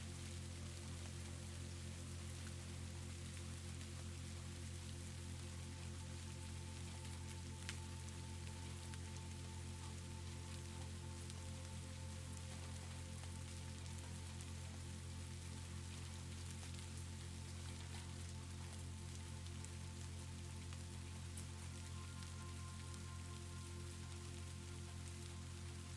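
Steady rain falling, with soft, slow background music of held low tones beneath it; a couple of higher tones come in near the end.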